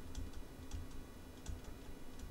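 Faint, irregular light clicks and taps of a stylus writing on a tablet.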